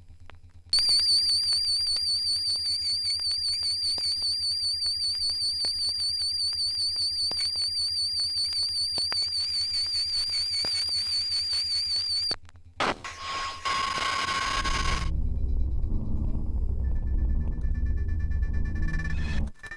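Live improvised electronic music from modular synthesizer, turntables and electronics: a high warbling tone over a low pulsing hum, which cuts off about twelve seconds in. A short noisy burst follows, then a loud, low pulsing bass.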